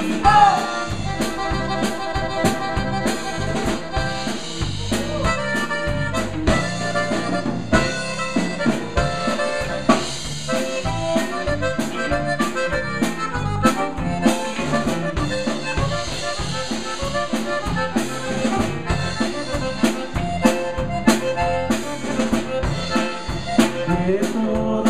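A conjunto band playing live: a button accordion carries the melody over a steady drum-kit beat and electric bass.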